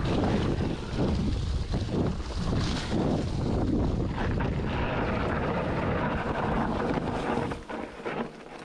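Maxxis mountain-bike tyres rolling fast over a dry dirt trail strewn with leaves, with wind buffeting the microphone and the bike knocking and rattling over bumps. The noise drops away suddenly near the end.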